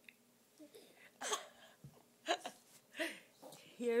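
A baby making three short breathy vocal sounds, like hiccups or effort grunts, about a second apart while straining forward on its tummy.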